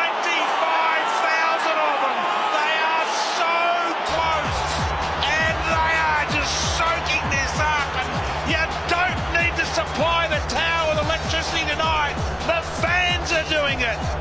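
Large stadium crowd cheering and shouting after the quarter-time siren, many voices overlapping. About four seconds in, music with a steady low bass comes in under the crowd noise.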